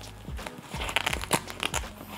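The Velcro (hook-and-loop) closure and fabric of an Oberwerth Richard 2 camera bag's padded insert being pressed and handled: irregular crackling and rustling with a few sharp clicks.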